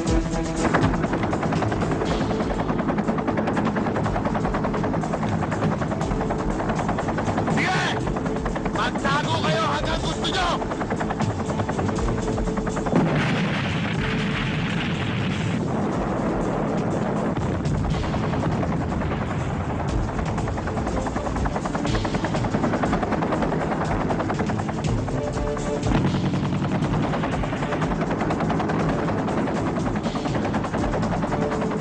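Movie gun-battle soundtrack: continuous rapid gunfire and machine-gun bursts with booms, mixed with music.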